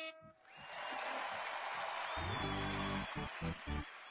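Sound effects played from a video-call soundboard: a steady rushing noise sets in about half a second in, a low buzzing tone joins near the middle, and a few short low pulses follow near the end.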